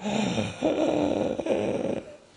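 A person's low, wordless voice drawn out in two long stretches, with a short break about half a second in.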